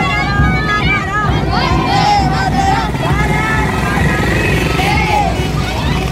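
Many young voices shouting and calling over one another in a marching crowd of schoolchildren, over a continuous low rumble.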